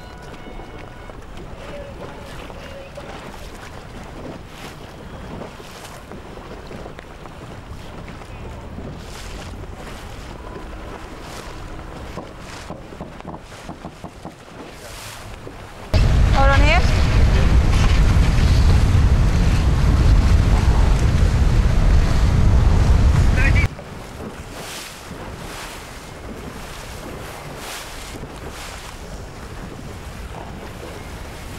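Wind and rushing water around TP52 racing yachts sailing upwind. For about eight seconds from midway, the sound turns much louder and deeper: heavy wind buffeting on the microphone and water rushing along the hull, heard from aboard beside the crew hiking on the rail.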